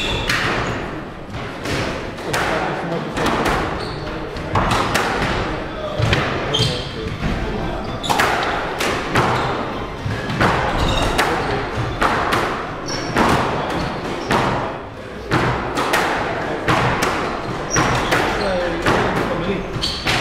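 Squash rally: the ball cracking off rackets and smacking against the front and side walls at irregular intervals, each hit echoing around the enclosed court, with short shoe squeaks on the wooden floor.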